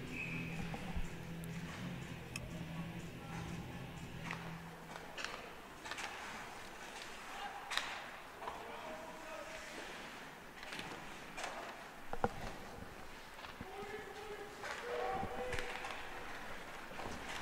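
Live rink sound of an ice hockey game: sharp clacks of sticks on the puck and boards and skates on the ice, with players' distant shouts now and then. A low hum stops about five seconds in.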